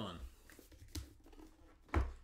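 Light handling of a cardboard trading-card box, with a faint click about a second in and a sharp knock near the end as the box is set down on the table.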